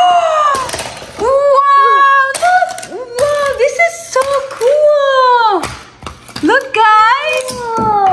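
Excited high-pitched voices: drawn-out wordless squeals and exclamations that slide up and down in pitch, with a short lull about three-quarters of the way through.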